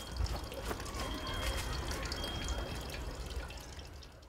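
Outdoor garden ambience: a low steady rumble with scattered small clicks and ticks, and a faint high thin whistle twice. The level fades away near the end.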